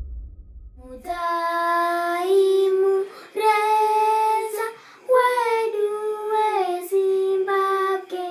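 A low rumble dies away, then a child's voice sings unaccompanied in four long held phrases, each note sliding down at its end.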